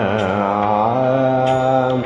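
Male voice singing Carnatic music in raga Thodi: one long sustained note that glides and then holds steady, ornamented with oscillating gamakas. A couple of faint clicks sound beneath it.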